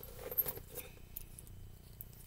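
Small metal clasps on a purse strap clinking and jingling as they are handled, with a couple of sharper clicks in the first half second.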